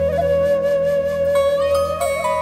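Bamboo transverse flute holding one long note, over a soft backing of sustained low chords.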